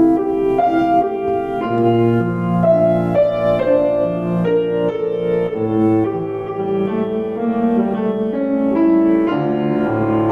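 A Petrof grand piano played live in an improvisation: chords and a melody with notes left ringing over low bass notes, at a steady level.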